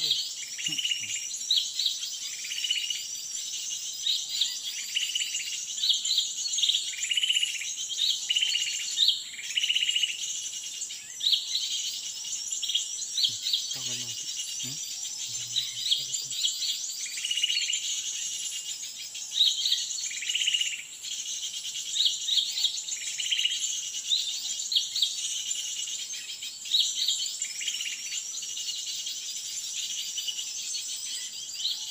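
A small bird calling in short notes repeated every second or so, over a continuous high buzz of forest insects.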